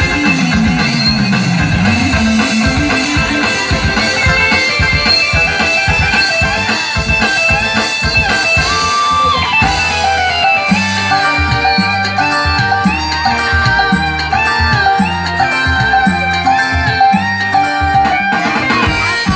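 Loud music from an electronic keyboard: a stepping melody over a steady drum beat, with a heavier bass line coming in about ten seconds in.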